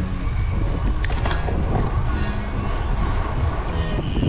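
Wind rumbling on the microphone of a camera riding on a moving road bike, with background music faintly underneath and a brief click about a second in.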